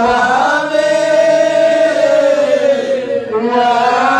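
Men chanting zikr (Islamic dhikr) together. A long held line slides slowly down in pitch through the middle, with a brief break near the end before the chant picks up again.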